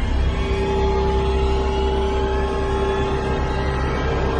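Dark, horror-style background music: a steady low rumbling drone under a couple of long held notes.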